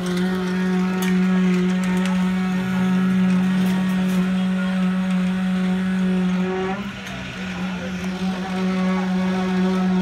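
Electric concrete needle vibrator running with a steady, high hum while it compacts freshly poured concrete in shear-wall formwork. The hum briefly weakens and wavers about seven seconds in.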